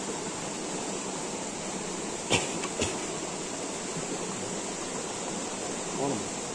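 Butane jet torch lighter hissing steadily as its flame is held to the slits of a Swedish fire log. Two sharp clicks come about half a second apart a little past halfway.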